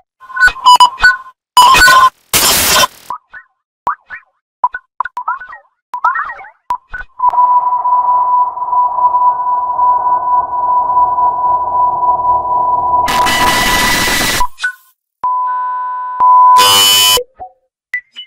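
A Samsung phone battery alert tone played in a run of digitally altered versions. Early on it is reversed and overdriven into loud, distorted bursts. Near the middle, maximum reverb stretches it into a long ringing tone of about seven seconds, which ends in a burst of noise, and short altered chimes follow near the end.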